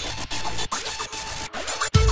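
Electronic music breakdown: the bass and beat drop away, leaving a noisy, scratchy high-pitched texture broken by several brief cut-outs. The bass comes back in at the very end.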